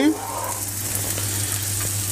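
Sliced mushrooms sizzling steadily in hot oil in a nonstick frying pan, left still so they sear and brown instead of sweating out water.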